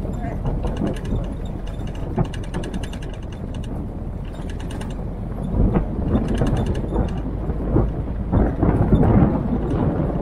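Military-style Jeep driving slowly on a rough gravel track, its engine running low and steady under a loose metallic rattle of body parts and fittings. The rattle comes as rapid ticking in places, and the knocks get louder near the end as the vehicle jolts over bumps.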